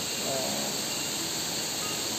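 Waterfall rushing steadily: an even hiss of falling water.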